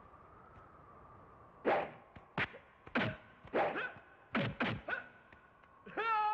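Movie fight punch sound effects: a run of about eight sharp hits, some in quick pairs, starting a little under two seconds in after a quiet stretch with a faint steady tone.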